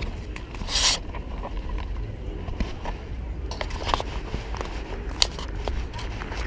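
Handling noise from a handheld camera being turned around: scattered scrapes and clicks over a steady low rumble on the microphone, with a short rushing noise about a second in.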